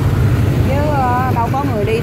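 Vietnamese speech over a steady low rumble of street traffic.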